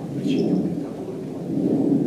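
A low rumbling noise that swells twice, with a brief faint high chirp about a quarter second in.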